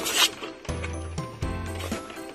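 Upbeat background music with a steady beat, opening with a short hiss from a garden hose spray nozzle that stops about a quarter second in.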